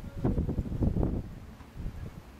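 Wind buffeting the microphone in irregular low gusts, strongest in the first second and easing off after.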